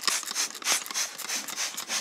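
Trigger spray bottle of all-purpose interior cleaner being pumped rapidly: a quick run of short hissing sprays, about four a second.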